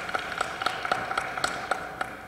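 Audience applauding in a hall, a dense patter of clapping with scattered sharper individual claps, dying away near the end.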